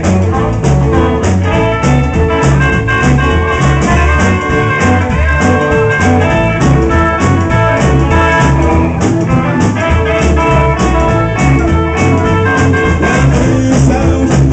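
Live rockabilly band playing an instrumental passage with no vocals: electric guitars, electric bass and drum kit keeping a steady beat.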